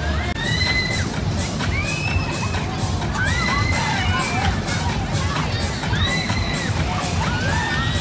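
Riders on a Twister fairground ride screaming again and again, each scream rising then falling, over loud fairground music with a steady beat.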